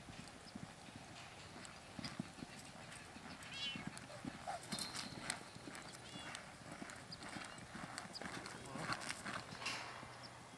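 Hoofbeats of a two-year-old sorrel filly loping on soft arena dirt, coming as dull, uneven thuds.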